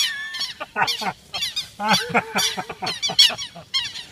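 Southern lapwings giving harsh alarm calls, rapid series of short repeated notes with a brief lull a little over a second in: the birds defending their nest against a person close by.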